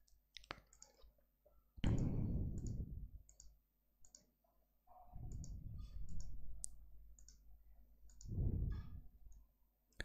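Computer mouse clicking: a dozen or more short, sharp clicks scattered unevenly, as chart drawing tools are selected and placed. A few softer, duller noises lasting about a second each fall in between.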